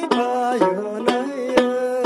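Tibetan dramyin lute strummed in a steady rhythm of about two strokes a second, its open strings ringing on under the strokes. A wavering sung phrase runs over it in the first second and a half.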